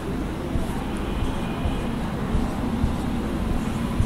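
Steady low rumbling background noise, with a few faint taps of a marker on a whiteboard as dots are drawn.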